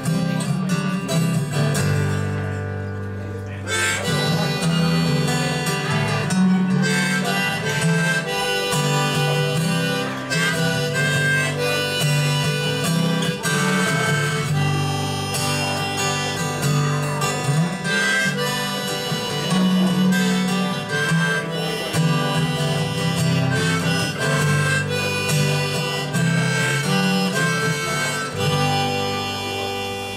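Harmonica played from a neck rack over strummed acoustic guitar: an instrumental solo closing the song, with the playing dropping off slightly near the end.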